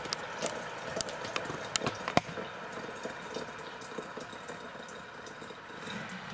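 Water poured from a glass kettle into a glass jug of loose tea, a steady pour with a few sharp clicks in the first couple of seconds.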